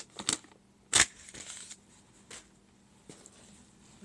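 Paper being handled: a few sharp crinkles and rustles, the loudest about a second in, then fainter rustling.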